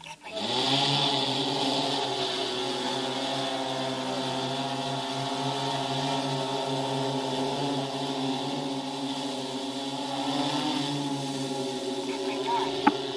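Multi-rotor agricultural spray drone's propellers humming steadily in flight: a low, even buzz with a hiss above it. It starts suddenly just after the start, rising briefly in pitch before it settles.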